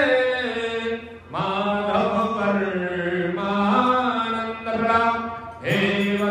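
A single voice chanting a Sanskrit devotional hymn to Krishna in long, drawn-out sung phrases, with a short pause for breath about a second in and another near the end.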